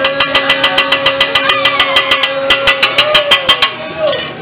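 Hibachi chef's metal spatula and fork clacking rapidly and evenly on the teppanyaki griddle, about seven clacks a second, stopping near the end. A steady high tone runs underneath.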